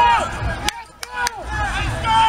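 Raised voices shouting across an outdoor football field, with three short, sharp clicks in a quieter moment about a second in.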